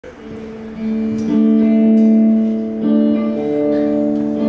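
Electric guitar playing the intro of a slow old-style country song: a few strummed chords, each left ringing, with a chord change about a second in and another near three seconds in.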